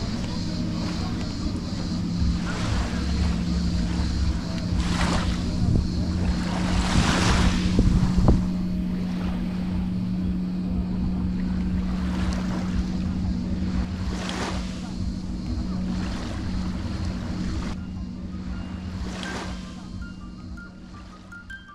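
Small waves washing onto the beach, one swell every couple of seconds, with a steady low hum underneath.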